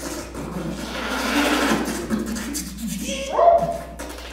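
Experimental noise and musique concrète collage: murky, irregular processed sounds with voice-like fragments and a hissy swell in the middle, then a short rising pitched cry near the end, the loudest moment.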